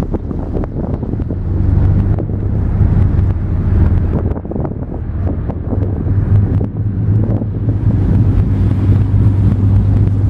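A motor yacht's engines running with a steady low drone while under way, with wind buffeting the microphone.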